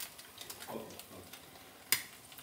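Faint sizzle of an egg frying on a flat griddle pan over a gas flame, with one sharp click near the end.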